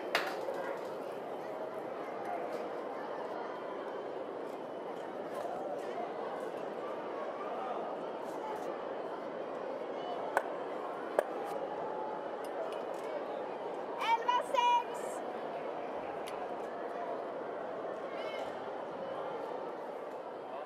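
Curling arena ambience with a steady murmur of crowd voices. About ten and eleven seconds in there are two sharp clacks of granite curling stones striking stones in the house, and a brief high-pitched sound in three quick bursts a few seconds later.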